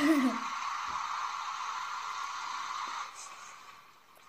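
Small hatchback car driving along under acceleration, a steady rushing of engine and road noise heard through a television's speaker, fading away after about three seconds.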